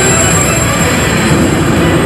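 Grand Cross Legend coin-pusher machine playing a loud, steady rushing sound effect over its music during the Legend jackpot Big Roulette animation.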